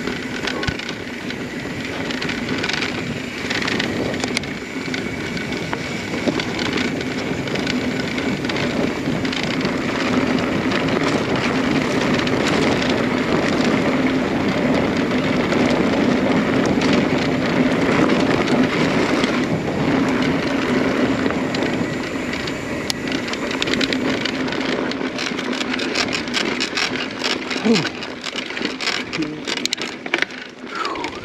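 Mountain bike rolling fast over loose gravel and dirt, making a steady rush of tyre noise, with the bike rattling over rough ground. The clicks and rattles grow thicker near the end.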